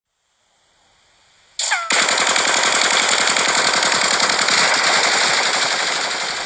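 Intro sound effect of automatic gunfire: a brief falling whistle-like glide about a second and a half in, then a long, rapid, continuous burst of machine-gun fire.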